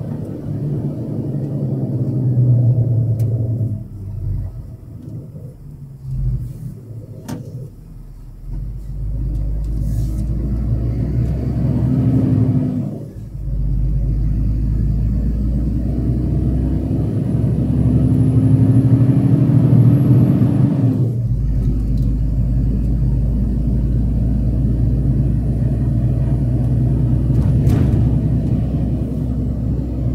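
Diesel truck engine heard from inside the cab while driving: it quietens for a few seconds, then pulls twice with a rising pitch, each rise breaking off suddenly as at a gear change.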